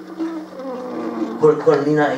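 A man humming a tune with his mouth closed, holding low notes that move in steps.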